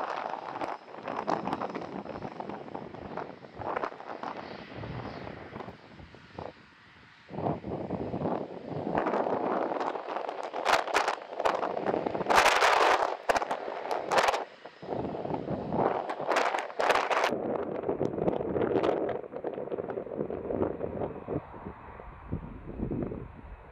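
Boeing 757 jet engines running with the exhaust pointed towards the microphone, the jet blast buffeting it in rough, crackling gusts. The noise dips briefly a few seconds in, then comes back louder, with the harshest crackle in the middle of the stretch.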